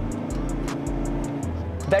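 Background music with a quick, steady ticking beat and bass, over a steady drone from the Ford Endeavour's 3.2-litre five-cylinder diesel engine heard inside the cabin.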